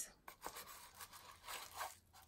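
Faint, irregular rustling and crinkling of paper packaging as a small cardboard box is opened and a paper-wrapped item is lifted out, a little louder near the end.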